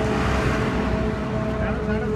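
Road traffic: vehicle engines running close by, with a rush of noise in the first second as a vehicle passes, over a steady hum.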